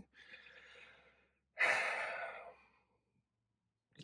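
A man breathing in faintly, then a long audible sigh out about one and a half seconds in, tailing off.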